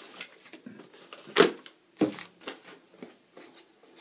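A few sharp knocks and clacks of a plastic lidded storage container being picked up and handled, the loudest about a second and a half in and another about half a second later.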